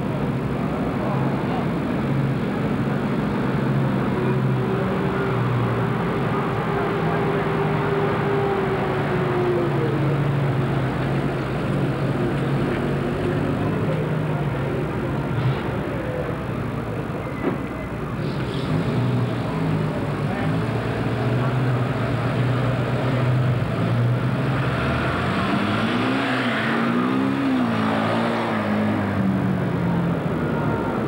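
Engines of WWII-era army trucks running as they drive slowly past in convoy, a steady low hum with one engine's pitch rising and falling now and then. Voices and music sound along with them.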